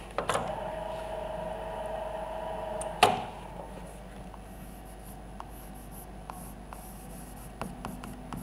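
Chalk writing on a blackboard: a long squeaking stroke for the first three seconds or so, ending in one sharp loud tap, then light scattered taps and scrapes of the chalk.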